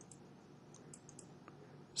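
A few faint computer mouse clicks over near silence, three of them close together about a second in.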